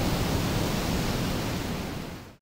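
Wind blowing across the microphone: a steady, loud rushing noise with uneven low buffeting, easing off slightly toward the end.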